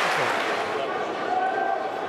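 Football stadium crowd noise: a steady murmur of spectators, with one voice calling out above it about a second in.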